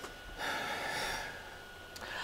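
A person's breathy exhale, about a second long, like a short gasp, over a faint steady high-pitched tone.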